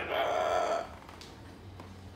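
Moluccan cockatoo making its talk-like vocalization, one drawn-out 'ahhh' that ends just under a second in.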